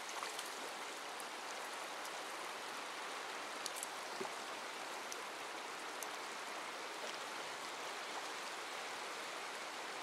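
Shallow, rocky upland river running over boulders and stones: a steady, even rush of water, with a few faint ticks about four seconds in.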